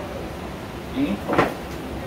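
A pause in speech: steady low room hum picked up by the microphone, broken about a second in by a short vocal sound and a brief sharp click-like sound.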